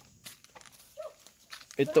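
Faint footsteps in sandals on stone steps, with one brief short squeak about a second in.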